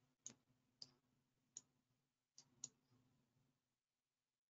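Faint computer mouse clicks, five at irregular spacing over about two and a half seconds, as a Word document is scrolled down. Under them is a very faint steady low hum.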